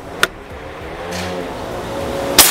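A motor vehicle passing by, its engine noise growing steadily louder, with a single sharp click near the start.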